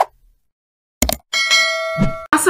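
Notification-bell sound effect from a subscribe animation: a sharp click about a second in, then a bright bell ding that rings on steadily.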